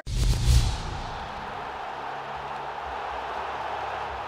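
Transition sound effect: a whoosh over a deep low boom as the graphic wipe hits, settling within a second into a steady, airy, hissing music bed with a faint low drone.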